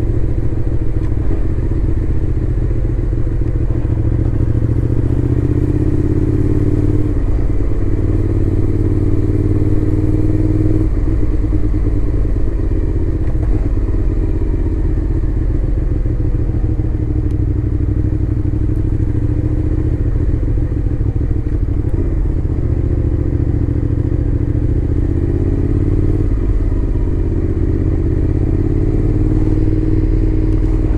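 Suzuki Gladius 400's V-twin engine running under the rider at low road speed. Its note climbs gradually and drops back several times as the throttle is eased on and off.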